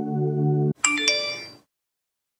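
A steady ambient music drone cuts off abruptly, then a bright two-note chime, like a phone notification sound, rings out and fades within about half a second.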